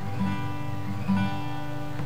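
Acoustic guitar strummed slowly and evenly, about two strums a second, with the chord ringing on between strums.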